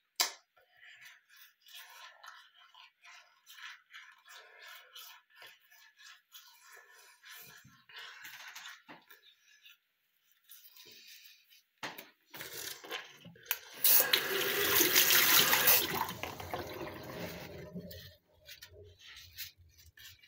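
Teeth being brushed over a bathroom sink, a faint scrubbing in the first half. About two-thirds of the way in, a tap runs into the sink for about four seconds, the loudest sound, then trails off.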